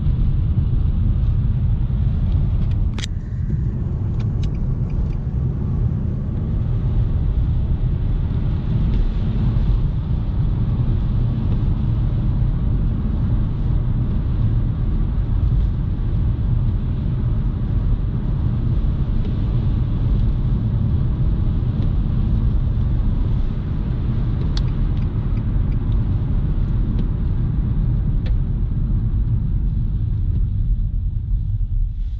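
Inside the cabin of a 2012 Nissan Juke 1.6L driving at steady speed: a constant low rumble of engine and road noise. A few sharp clicks cut in, one about three seconds in and two more near the end.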